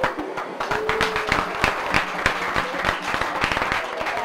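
A group of people applauding, many hands clapping quickly and unevenly.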